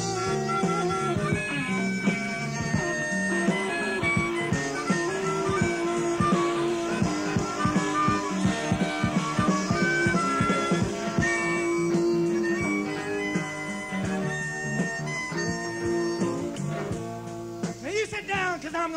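Live rock band playing an instrumental passage: sustained lead melody notes over bass and steady drum hits, from a portable cassette recording made with a pair of external microphones.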